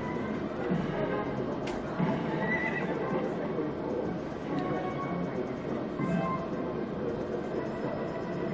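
Centurion slot machine's game sounds: horse-and-chariot sound effects as chariot symbols land and pay on the reels, over the game's looping music.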